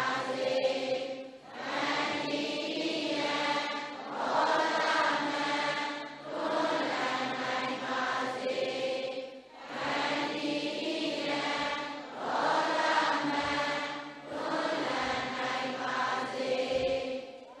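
A large congregation of Buddhist devotees, men and women together, chanting in unison. The recitation comes in phrases a few seconds long with brief pauses between them.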